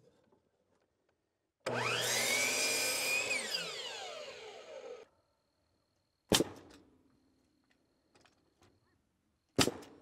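Power miter saw spinning up, cutting a small wooden block and winding down, its whine falling in pitch over about a second and a half. Then a pneumatic framing nailer fires twice, the two sharp shots about three seconds apart.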